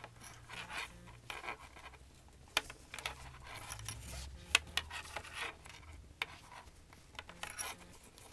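Paracord strands rubbing and sliding against each other and the fingers as a cobra weave knot is worked tight, with scattered small clicks and scratches.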